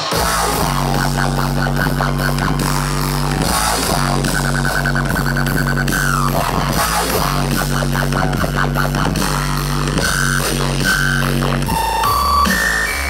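Dubstep played loud over a concert PA, heard from within the crowd: a steady deep bass line under a fast repeating synth figure, with a held high synth tone that slides downward midway.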